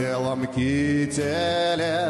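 A pro-Stalin song playing as the soundtrack of a promotional video: a singer holding long notes over instrumental backing, with a wavering held note in the second half.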